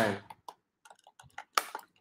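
Light, scattered clicks and ticks from handling a plastic toy figure and its cardboard packaging by hand, with a sharper click about one and a half seconds in.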